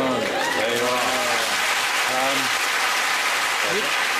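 Studio audience applauding steadily, with a few voices exclaiming over the clapping in the first couple of seconds.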